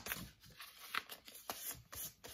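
Fine-grit sandpaper rubbed by hand over teju lizard boot skin in short back-and-forth strokes, about three a second, each a dry scratch. The light sanding lifts the darkening that cleaning left on the sanded-colour skin.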